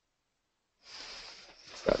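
Silence, then about a second in a soft, hissy breath into the microphone, with a man starting to speak near the end.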